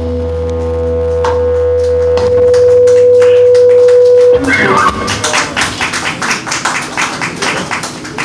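A live blues rock band's closing note: one held tone over a low drone, swelling louder, then cut off sharply about four seconds in. Audience applause follows.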